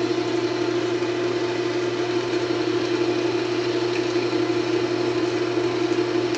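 Harbor Freight 34706 wood lathe running at a steady speed, spinning a wooden workpiece held in a Nova chuck; its motor and drive hum evenly at one pitch throughout.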